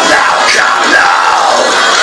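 A harsh screamed vocal shouting "come now" over a melodic death metal backing track, recorded on a phone with thin, boxy sound and almost no bass.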